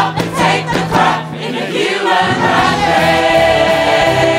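Background music: a choir of many voices singing with instrumental accompaniment, the bass briefly dropping out midway and coming back.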